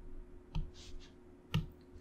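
A couple of faint, light taps on an iPad's glass screen, the clearest about one and a half seconds in.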